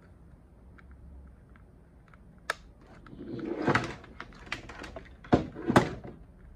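Handling noises from routing cables into the base of a Meeting Owl 3 speaker-camera: light plastic clicks, a sharp click about halfway through, a rustling scrape, then a run of clicks and two loud knocks near the end.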